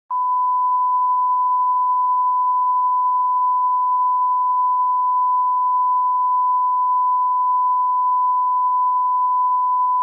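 A steady, unbroken 1 kHz sine test tone: the line-up reference tone that goes with colour bars at the head of a tape.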